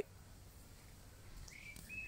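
A bird gives a couple of short chirps near the end over faint background noise.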